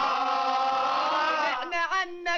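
A group of men chanting together in unison, holding one long note, then breaking into short choppy syllables near the end.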